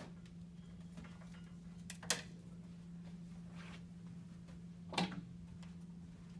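Two sharp clicks about three seconds apart, a chopstick knocking against a bonsai pot as it is worked through the fresh soil to settle it around the roots and drive out air pockets, over a steady low hum.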